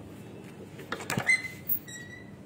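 A quick cluster of hard knocks on a tiled floor about a second in, like footsteps, then a short high squeak near the end.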